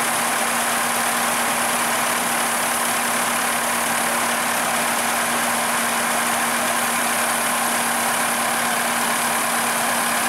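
Dronningborg combine harvester running steadily while its unloading auger pours grain into a trailer: an even machine hum with one constant low tone and a hiss of pouring grain, unchanging throughout.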